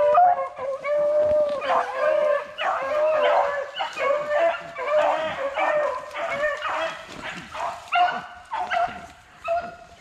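A pack of beagles baying together, several voices overlapping without a break: hounds in full cry running a rabbit.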